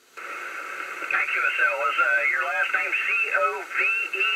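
A CB radio's speaker receiving a lower-sideband signal. A steady hiss comes in suddenly just after the start, and from about a second in a distant operator's thin, band-limited voice rides on top of it.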